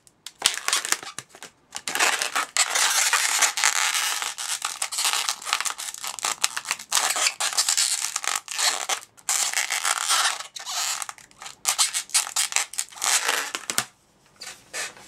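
Inflated latex twisting balloon rubbing and squeaking under the fingers as it is handled and its twisted ears are straightened, in irregular crackly bursts with a few brief pauses.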